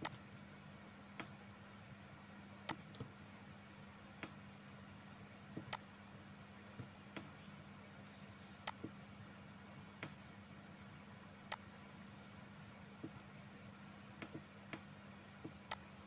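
Computer mouse clicking, single sharp clicks at irregular intervals of about one to two seconds, over a faint steady low hum.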